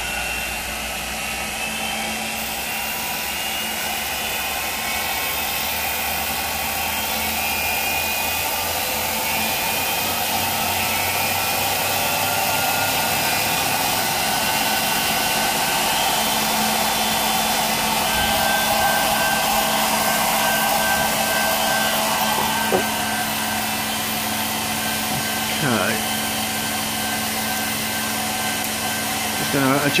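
Ignition test rig's electric motor spinning a KH400 pickup rotor at high speed, a steady whir. It grows louder over the first several seconds as the rig is run up towards 6,500 rpm, then holds steady.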